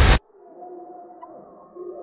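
A loud roaring blast cuts off abruptly just after the start, giving way to a quiet, eerie drone of held tones that slowly bend in pitch.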